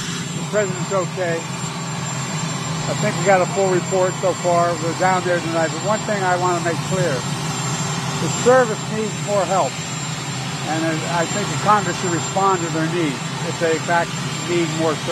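A man speaking into microphones over the steady running of a parked helicopter's turbine engines: a constant low hum with a thin, high whine.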